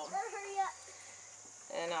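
A woman's voice talking at the start and again near the end, with a faint steady high-pitched insect chorus underneath throughout.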